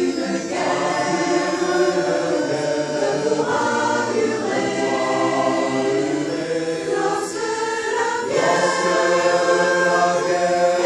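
A mixed choir of women's and men's voices singing in parts, holding long sustained chords, swelling a little louder near the end.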